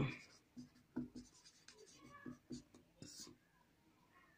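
Whiteboard marker writing on a whiteboard: faint, intermittent short scratches and squeaks as letters and an underline are drawn.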